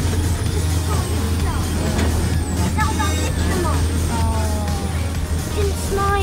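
Steady low hum of a moving amusement-park ride car, with voices and music over it.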